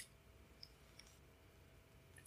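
Near silence: quiet room tone with two faint short clicks, about half a second and a second in.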